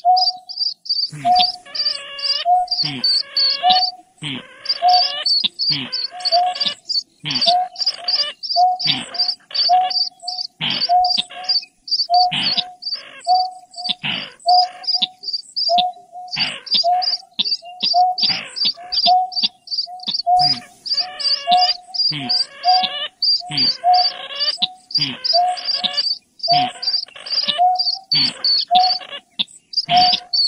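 Recorded calls of greater painted-snipe and a rail, mixed as a bird-trapping lure. A steady, fast run of short high, sharp notes goes on throughout, interleaved with low hollow hoots more than once a second.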